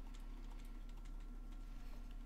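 Faint, scattered clicks of a computer keyboard being used, over a steady low hum.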